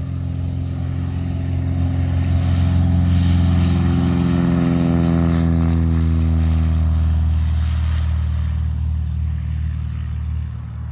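A GippsAero GA8 Airvan's single piston engine and propeller running as the plane moves along a grass airstrip. It grows louder over the first few seconds, then fades, its pitch dropping as it passes.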